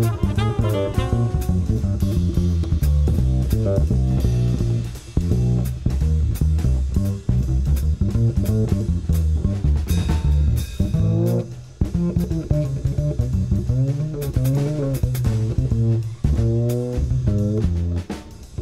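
Small-group jazz recording with a plucked double bass to the fore and a drum kit behind it, the bass moving from note to note in continuous lines with short breaks between phrases.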